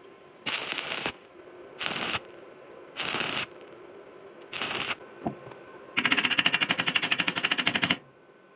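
Stick-welding arc on steel rebar: four short bursts of arc crackle, each about half a second long, followed near the end by two seconds of rapid, pulsing crackle, about a dozen pulses a second.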